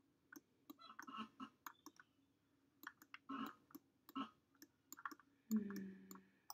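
Quiet, irregular clicks of a computer mouse and keyboard, about a dozen scattered through, as someone works in 3D modelling software. A short low hum comes near the end.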